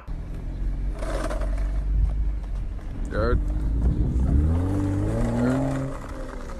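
A car engine running with a steady low rumble, rising in pitch as it revs up about four seconds in. A short shout breaks in about three seconds in.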